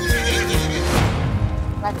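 A horse whinnying in the first second, a wavering, falling call, over steady background music.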